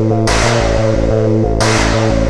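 Free-party tekno track: a fast, pounding kick-drum and bass pattern under a held synth tone, with a hissing noise swell breaking in twice.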